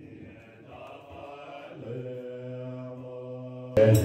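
Buddhist prayer chanting: a low voice settles into one long held note about halfway through. It stops abruptly near the end, giving way to a louder, noisier passage.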